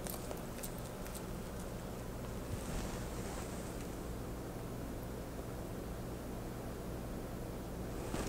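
Quiet room tone: a steady low hum with faint hiss, and a slight soft rustle about three seconds in.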